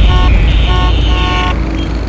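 Car horns honking in three short blasts over a low steady rumble of city traffic.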